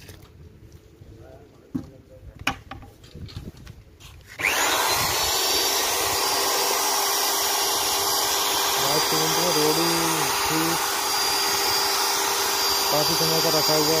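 Handheld electric paddle mixer switched on about four seconds in, its motor whine rising quickly to a steady high pitch and running on loudly as the paddle stirs white cement in a plastic bucket.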